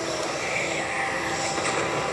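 Sound effects from an anime fight scene: a steady rushing roar, with faint held tones underneath.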